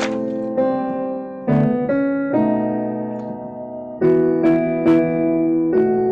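Piano playing the lower vocal parts of a choral piece together as a slow line of chords. Each chord is struck and held for about half a second to a second and a half before the next.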